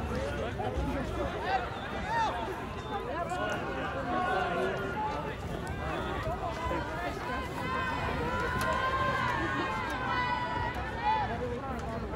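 Soccer spectators shouting and cheering, with many voices overlapping throughout.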